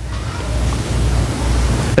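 A loud, steady rushing noise with a low rumble underneath, swelling slightly and cutting off suddenly as speech resumes.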